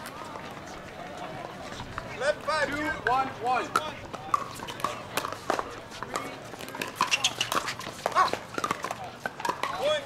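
Sharp pops of pickleball paddles striking a hard plastic ball, many of them at irregular times, from this and neighbouring courts. Voices call out, most clearly two to four seconds in.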